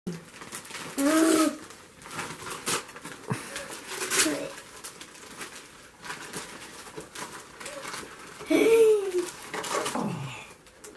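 Wrapping paper crackling and tearing as a child unwraps a Christmas present, in several short sharp bursts. Two brief voiced exclamations break in, about a second in and near the end.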